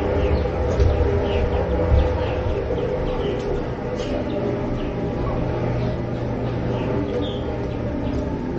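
Birds chirping repeatedly, short high calls every second or so, over a steady low hum.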